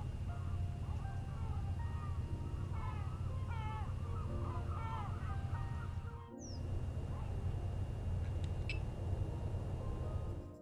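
Outdoor ambience: a steady low rumble with many short, rising-and-falling bird calls over it, most of them in the first half. The sound drops out briefly about six seconds in, then the rumble carries on with a few faint high chirps.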